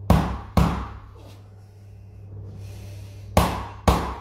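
A mallet knocking on a wooden stick held against a man's back, four sharp knocks in two pairs about half a second apart, the second pair about three seconds in: percussive tapping of the back muscles.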